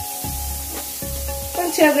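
Sliced red bell pepper and onion sizzling in bacon fat on a griddle pan, with a few short scrapes and taps of a slotted metal spatula tossing them. Background music with steady held notes plays over it, and a woman starts talking near the end.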